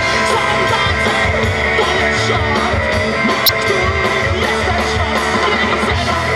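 A live rock band playing a song on electric guitars and drums at a steady loud level.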